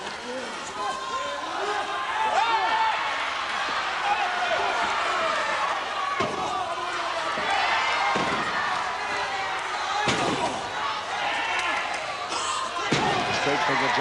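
Wrestlers being slammed onto the ring canvas: four heavy impacts, about two seconds apart in the second half, over a crowd shouting throughout.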